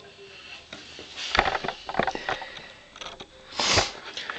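A person sniffing through a runny nose, the loudest sniff near the end, amid light clicks of plastic toy-figure parts being handled.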